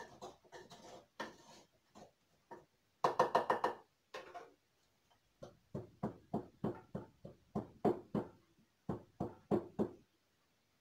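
Wooden pestle pounding garlic and Maggi stock cubes in a wooden mortar: a few scattered knocks at first, a quick run of strikes about three seconds in, then steady pounding at about three strokes a second from about halfway.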